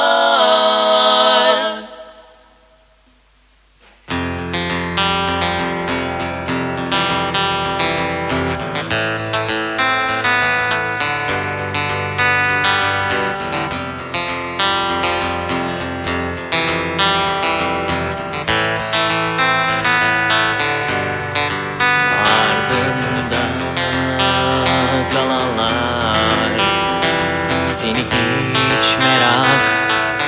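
Slow rock song intro: a held vocal note fades out in the first two seconds, followed by a brief near-silent gap. About four seconds in, a full band comes in, led by strummed guitar, and plays the instrumental introduction.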